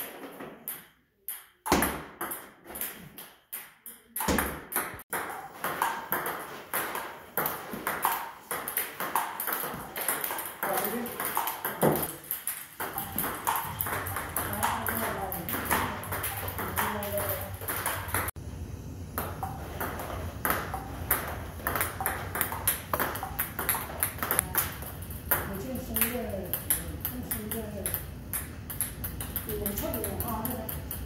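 Table tennis ball clicking quickly and repeatedly off the paddles and the table in serves and rallies, with indistinct voices and a low steady hum from about halfway through.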